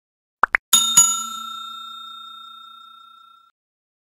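Two quick clicks, then a bright bell-like ding with a second strike just after it, ringing on and fading out over about two and a half seconds: the stock click and notification-bell sound effects of a subscribe-button animation.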